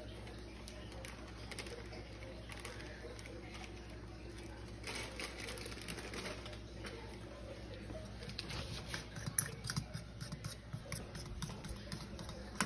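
A plastic bag of dry pancake mix rustling as it is poured into a mixing bowl, then a spoon stirring the batter, with irregular clicks against the bowl from about eight seconds in. A low steady hum runs underneath.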